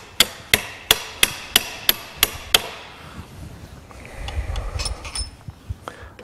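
Hammer tapping a pin against the coupling head's rear bolt to drive it into the draw tube: about eight light metallic taps, roughly three a second. The taps stop about two and a half seconds in, followed by softer clinks and handling of the metal parts.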